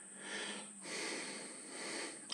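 Faint breathing: two soft breaths, one after the other, in a pause in speech.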